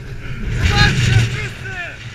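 Voices over a low rumble that swells about a second in and then fades away.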